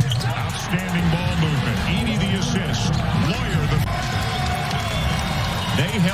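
Basketball arena game sound: a ball bouncing on the hardwood court over crowd noise, with music and voices mixed in.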